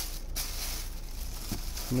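Thin plastic bag rustling and crinkling as it is handled, with a couple of faint clicks.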